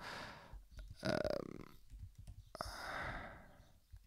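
A man breathing close to a microphone: a soft murmured 'um' about a second in, then a soft click and a breathy, sigh-like exhale lasting nearly a second.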